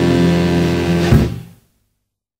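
A 1950s rock and roll band holds its final chord. A last sharp hit comes about a second in, then the recording dies away and cuts off about a second and a half in.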